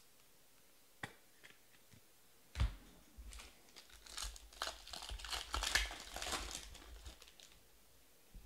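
Foil trading-card pack wrapper being torn open and crinkled by hand, a dense crackling rustle through the second half. A single thump comes about two and a half seconds in.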